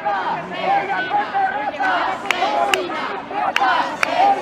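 Crowd of protesters shouting, many voices at once, with several sharp cracks in the second half.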